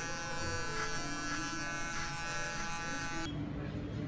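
Electric hair clippers buzzing steadily as they shave the hair up the back of the neck into an undercut, stopping abruptly about three seconds in.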